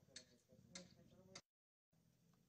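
Faint talk with three sharp clicks about half a second apart, then the sound cuts out suddenly to dead silence near the end.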